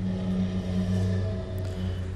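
Steady low machine hum, several held tones sounding together at an even level.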